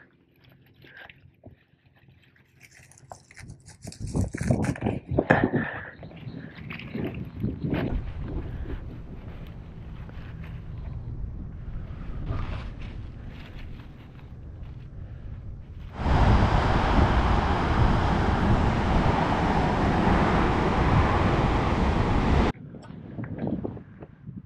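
Hands rustling and crackling through dry grass and ground litter, then a loud, steady rush of wind on the microphone for about six seconds that starts and stops abruptly.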